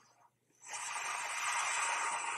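Almost silent for about half a second, then a steady hiss from the film soundtrack comes in and holds.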